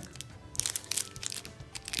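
Clear cellophane wrapping on pencil eraser toppers crinkling as the wrapped pencils are picked up and handled: a rapid run of small, irregular crackles.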